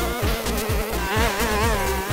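Petrol brushcutter's engine buzzing at high revs, its pitch wavering as the line cuts through long grass. Electronic music with a steady kick-drum beat, about four beats a second, plays over it.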